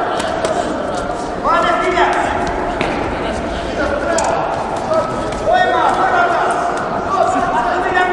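Men's voices calling out during a boxing bout, echoing in a large hall, with a few short thuds from the ring.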